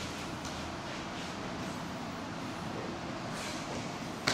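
Steady, even background hiss of room noise, with a few faint soft taps or rustles.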